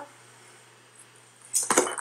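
A brief metallic clatter of a foil-lined baking sheet being handled, coming near the end over a faint steady hum.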